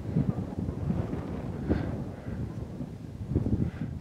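Wind buffeting the camera microphone, an uneven low rush.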